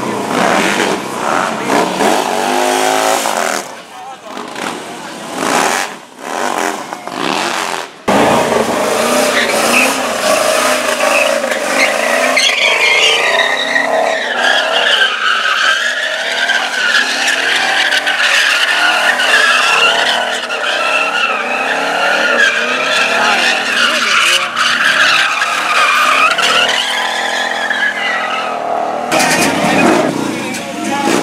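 A car doing a burnout donut, its tyres squealing over the engine's revving in one long, wavering scream that starts suddenly about eight seconds in and runs for some twenty seconds. Before that, motorcycle engines pass by.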